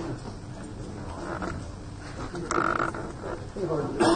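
Indistinct voices of people milling about and talking in a hall, with one brief, louder harsh noise about two and a half seconds in.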